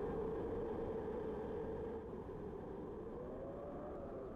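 A low, steady drone with a faint held tone that wavers slightly near the end, slowly fading.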